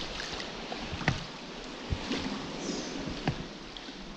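Water lapping and sloshing against a small inflatable dinghy inside a sea cave, with a few sharp knocks and splashes.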